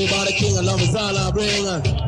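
Early-1980s dancehall reggae riddim played on a sound system, with a heavy bass line and a deejay's voice chanting over it, its pitch bending and dropping near the end.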